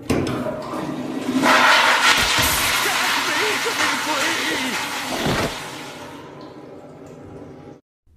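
Commercial flush valve toilet flushing: a rush of water that surges about a second and a half in, then dies away over several seconds before cutting off near the end.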